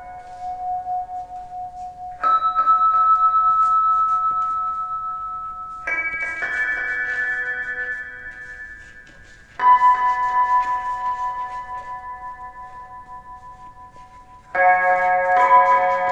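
Free-improvised electric guitar and amplifier sounds: sustained, bell-like chords that enter suddenly four times, about 2, 6, 10 and 15 seconds in, and each fade slowly with a slight wavering in loudness.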